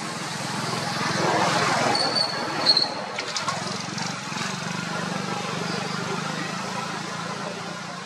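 Outdoor background noise: a steady low hum with a swell of noise about a second in, two short high-pitched chirps around two seconds in, and a few faint clicks just after.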